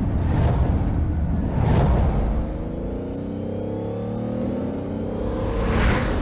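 Outro sting: music-like sound design over a deep rumble, with whooshes and a rising tone that climbs through the middle.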